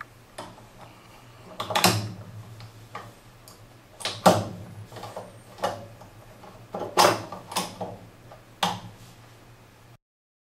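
Steel parts of a Gerät 03 rifle's bolt and receiver being handled and worked by hand: a series of sharp metal clacks, some in quick pairs, with brief sliding between them.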